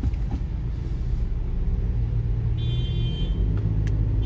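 Car engine and road rumble heard from inside the cabin while driving slowly in traffic, steady and slightly building. A brief faint high-pitched tone sounds about three seconds in.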